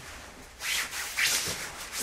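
Two short rubbing, scraping swishes, about half a second apart.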